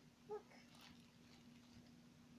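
Near-silent room tone with a faint steady hum. About a third of a second in comes one short, high-pitched squeak or yelp.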